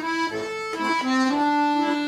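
Bayan (Russian button accordion) playing a melody with its reedy, sustained tone: a few short changing notes, then a long held note from about a second in.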